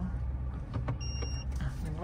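Steady low idle hum of an Isuzu D-Max 1.9 diesel pickup heard from inside the cabin. About a second in, a single short electronic beep sounds as reverse is engaged: the truck's reverse and parking-sensor warning.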